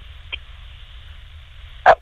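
Low steady hum and hiss of an open telephone line in a pause between speakers, with a faint tick about a third of a second in and a brief "uh" from a voice right at the end.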